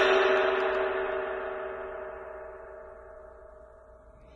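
Hammered Istanbul cymbal on a conventional stand ringing out after a single stick strike, fading steadily with the high overtones dying first while a few low tones hang on.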